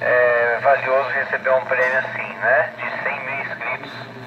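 A man's voice coming in over the loudspeaker of a VHF amateur radio transceiver, with a steady low hum beneath it.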